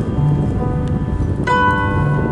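Grand piano playing an instrumental passage between sung lines, with held notes and a new chord struck about one and a half seconds in.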